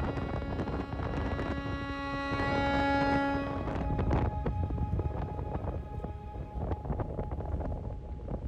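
A fiddle's last held note fading out a little over three seconds in, over wind rumbling and crackling on the microphone, which carries on alone afterwards.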